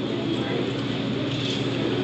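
Steady background noise of a restaurant dining room, an even hum and hiss with no distinct events.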